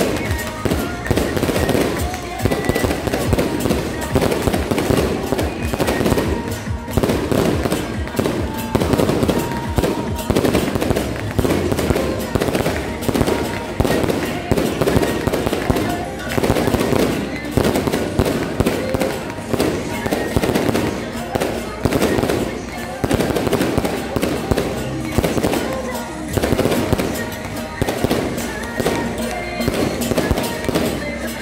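Taiwanese temple procession percussion: brass hand cymbals and small gongs, with drum, struck in a fast, continuous clatter.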